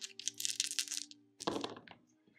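Four plastic six-sided dice rattling in a cupped hand for about a second, then a second clatter near the end as they are thrown and tumble onto a cloth gaming mat.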